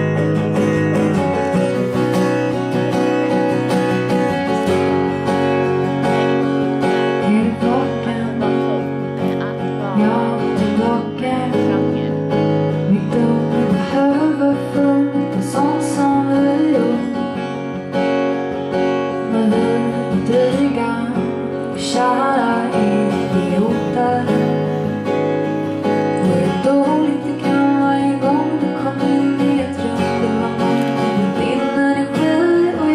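Live pop song played on strummed acoustic guitar, with a woman singing lead vocal over it.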